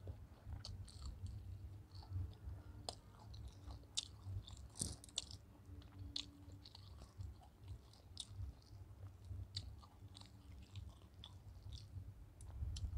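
Close-up chewing of a mouthful of biryani rice and fried chicken, with wet mouth sounds and many small sharp clicks and crackles scattered throughout, over a low steady rumble.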